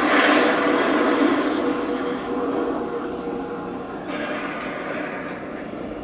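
A movie trailer's soundtrack, recorded in a cinema and played back through laptop speakers: a loud rushing, rumbling sound effect that comes in at once and slowly fades, with a faint steady tone beneath it.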